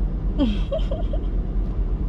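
Steady low rumble in the cabin of a Lamborghini Urus, with a short vocal sound, a falling murmur and a few brief syllables, about half a second in.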